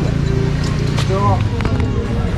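Busy outdoor street-market ambience: other people's voices talking in the background over a steady low hum, with a sharp click about halfway through.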